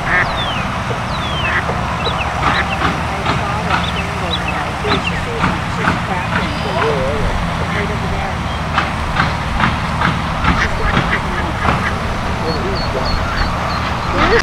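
A brood of ducklings peeping: many short, thin, falling peeps, over a steady low rumble.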